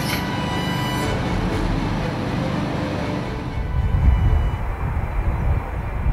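Background music thinning out under a steady low rumble of heavy machinery and vehicle engines, which swells about two-thirds of the way through.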